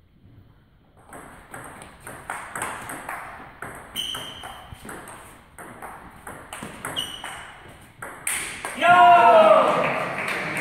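Table tennis rally: the ball clicking back and forth off the bats and table, about three hits a second, starting about a second in, with two short high squeaks. Near the end a loud shout as the point ends.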